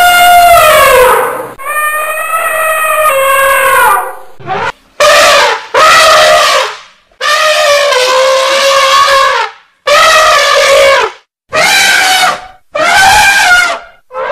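Elephants trumpeting: a series of about eight loud, brassy trumpet calls, each a second or two long, with short breaks between them.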